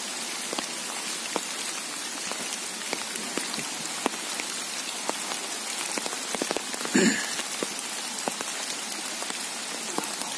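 Steady rain falling on trees and wet leaf litter: an even hiss dotted with many separate drop ticks. A short laugh cuts in about seven seconds in.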